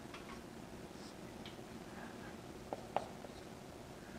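Dry-erase marker writing on a whiteboard: faint short squeaks and strokes, with two sharper taps at about three seconds in.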